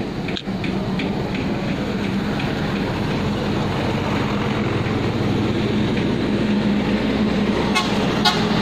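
A steady motor hum, with a light regular ticking, about three or four ticks a second, over the first few seconds and sharper clicks just before the end.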